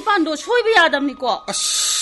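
Voices speaking dialogue, with a short hiss about a second and a half in.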